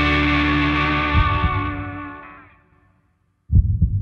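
Distorted electric guitar with the band on the song's last note, which rings on and fades away over about two and a half seconds. Near the end come two sudden low thumps close together.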